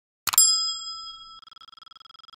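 A single bell-like ding: a clear chime struck once that rings on and slowly fades, its tail wavering in the second half.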